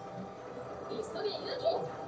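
Faint voices from the anime episode playing quietly in the background, with a steady faint tone underneath.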